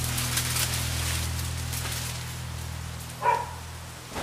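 A low, steady droning tone fades slowly away under a faint crackling hiss. A single short pitched call, the loudest sound, comes about three seconds in.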